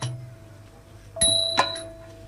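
Percussion of a nang talung shadow-puppet ensemble in a pause between chanted lines: a low drum beat at the start, then about a second in a cymbal-and-gong stroke that rings with a bright bell-like tone and fades, followed by a lighter tap.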